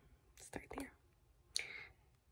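A woman's soft, breathy vocal sounds in a pause between sentences: a faint whispered murmur about half a second in and a breath or whispered sound shortly before the end.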